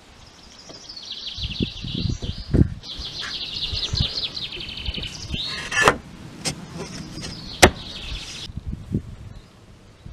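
A bird singing rapid, high-pitched trills in three stretches, with low bumps and two sharp knocks, about six and seven and a half seconds in, as a sheet of bending plywood is handled and set onto wooden roof rafters.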